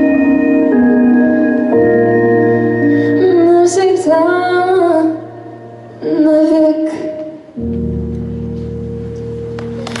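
Closing bars of a pop ballad: a girl's solo voice sings two short phrases, about three seconds in and again about six seconds in, over sustained organ-like keyboard chords. The song ends on a long held chord.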